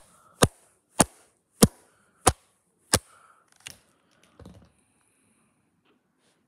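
A run of about seven sharp taps, evenly spaced a little over half a second apart, the last two weaker, followed by a short muffled bump about four and a half seconds in.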